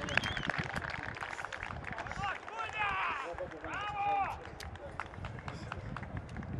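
Men shouting on a football pitch in celebration just after a goal, with short calls that rise and fall in pitch, loudest about three and four seconds in, over scattered sharp knocks.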